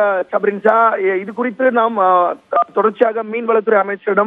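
A reporter speaking in Tamil over a telephone line, with the thin, narrow sound of a phone call.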